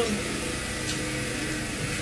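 Steady background noise with no distinct event, picked up through an open microphone.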